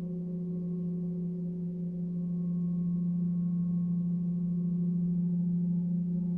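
A 36-inch cosmo gong sustaining a deep, steady hum with fainter higher tones ringing above it, slowly growing louder, with no distinct strike.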